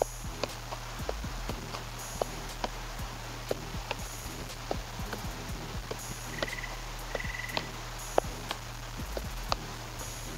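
Soccer ball juggled with bounces: sharp thuds about two a second as the ball hits the floor and is kicked back up off the foot.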